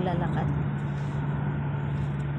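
Steady road and engine drone inside a vehicle moving at highway speed, with one constant low hum.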